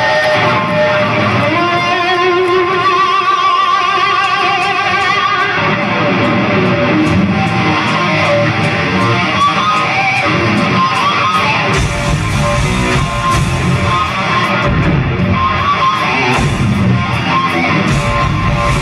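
Live heavy metal band playing loudly: electric guitars lead with long held, wavering notes for the first few seconds, then a busier riff follows, with bass and drums filling in a heavier low end about two-thirds of the way through.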